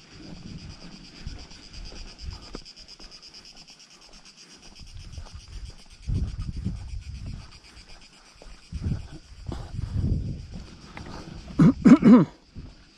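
Cicadas buzzing steadily in a high, fine-pulsed drone, with gusts of wind rumbling on the microphone. Near the end comes a short, loud pitched call, the loudest sound.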